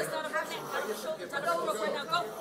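Several people praying aloud at the same time, their voices soft and overlapping.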